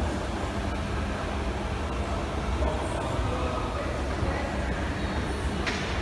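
Escalator running: a steady low mechanical rumble and hum under the ride down.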